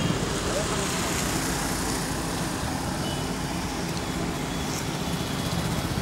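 Steady rumble of road traffic and vehicle engines, with a few faint high tones running over it.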